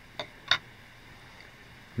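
Two short, crisp clicks about a third of a second apart, the second louder, from fly-tying scissors as the excess deer hair is clipped off at the vise.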